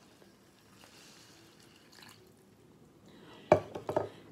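Water being poured into a bowl of dry cereal, a faint trickle, followed near the end by a sharp knock.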